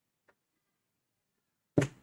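A faint click, then a single loud thump near the end, sudden and short with a brief tail.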